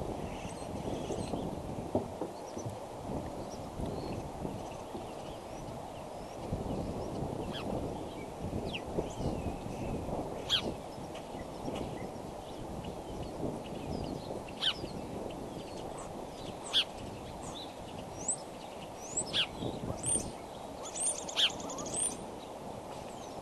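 Wild birds chirping and calling in short, high notes scattered throughout, coming thicker near the end, over a steady low outdoor rush of background noise.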